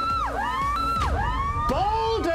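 A performer's high wailing voice sliding up and down in pitch in repeated siren-like swoops, a deliberately odd mock pop performance.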